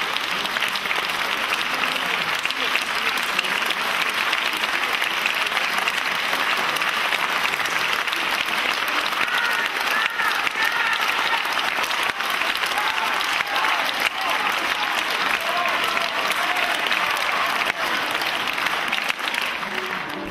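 Concert-hall audience applauding steadily, with a few voices calling out from the crowd partway through.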